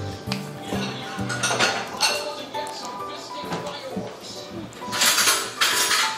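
Background music, with a metal spoon clinking and scraping against a glass dish, loudest in a burst of scraping about five seconds in.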